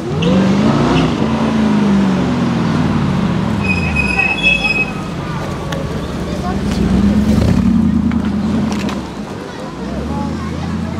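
Mercedes-Benz SLR McLaren's supercharged V8 being revved as the car drives slowly past and away. The engine note climbs in the first second, holds, eases off in the middle, and swells again around seven seconds in.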